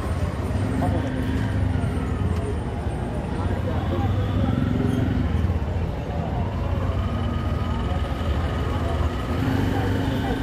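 Busy roadside ambience: a steady rumble of traffic with people talking nearby, and a knife tapping as it chops green chillies on a small wooden board.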